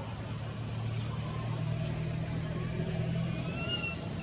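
A vehicle engine running steadily nearby, a low even hum, with a short high chirp right at the start.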